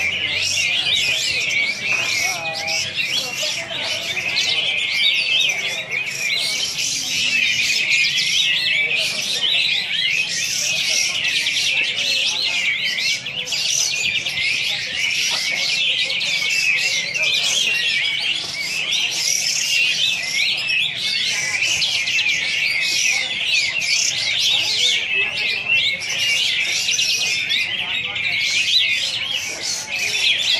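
A caged kapas tembak bulbul singing its fast besetan song: a dense, unbroken run of quick high chirps and trills.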